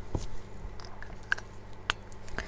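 A few small, sharp clicks and soft rustles of hands handling a pen and paper over crochet work.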